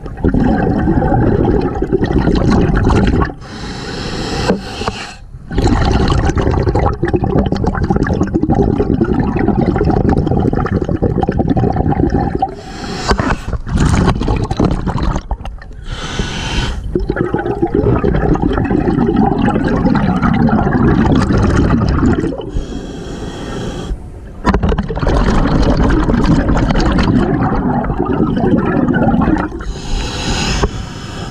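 Water churning and bubbling around an underwater microphone, in long loud stretches broken by a few quieter pauses of a second or two.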